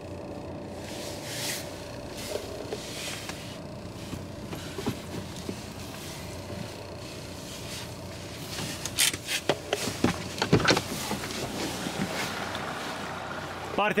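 Dacia Duster's engine idling, heard from inside the cabin as a steady low running sound, with a string of clicks and knocks about two-thirds of the way through.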